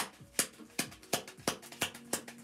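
A deck of tarot cards being shuffled by hand, sharp regular card slaps about three times a second.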